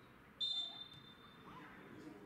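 Football referee's whistle blown once, a sudden shrill blast about half a second in that is loudest at first and then fades to a faint held tone, signalling a stoppage in play.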